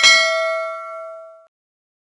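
A single bell-chime 'ding' sound effect marking the click on a YouTube notification-bell icon. One strike rings with several clear tones and fades out within about a second and a half.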